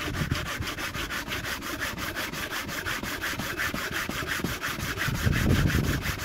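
A steel body file rasps back and forth across the cast-iron mating face of an exhaust manifold in fast, even strokes. The work is flattening a rusty, pitted face so the manifold will seal.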